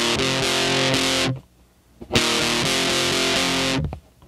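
Distorted, fuzzed-out electric guitar strumming chords. There are two strummed passages, each a little over a second long, with a short pause between them, and each is cut off sharply.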